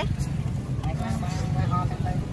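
A steady low rumble of street traffic, with a faint voice talking in the background.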